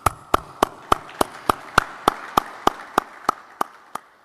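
Small audience applauding. One pair of hands near the microphone claps steadily at about three claps a second over the softer clapping of the others, and it all dies away near the end.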